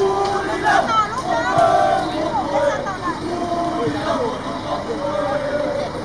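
A crowd of football fans chattering close by, several voices talking over one another.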